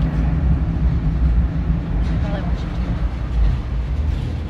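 Inside a moving car's cabin: the steady low rumble of the engine and tyres on the roadway.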